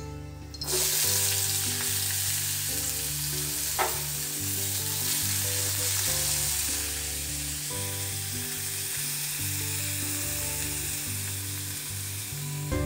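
Sliced vegetables tipped into hot oil in a wok, setting off a sizzle that starts suddenly about a second in and carries on as they are stir-fried with a metal spatula. A single knock of the spatula against the wok comes a few seconds in.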